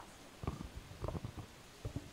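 Faint room tone broken by a few soft, low thumps about half a second, a second and near the end.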